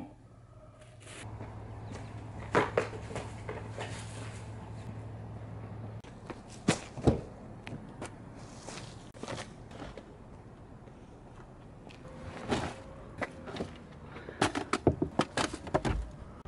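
Footsteps and scattered knocks and thuds of items being handled and set into a minivan's open rear cargo area, with a heavy thump about seven seconds in and a quick flurry of clicks near the end. A steady low hum sits under the first few seconds.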